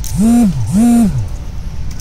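A person's voice making two loud, identical drawn-out calls in quick succession, each rising in pitch, holding and then sliding down, over steady low background noise.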